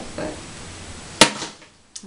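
A single sharp click about a second in, after a spoken word at the start; the background hiss then drops away almost to nothing, with a faint click at the very end.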